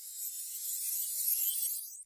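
A high, hissy, shimmering swoosh sound effect with a fine clicking texture, swelling louder and rising toward the end before cutting off suddenly.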